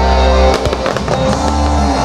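Fireworks bursting, with a quick run of bangs and crackles about half a second in, over music that plays throughout.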